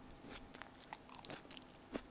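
A person chewing a mouthful of food, faintly, with a scatter of small wet mouth clicks and soft crunches.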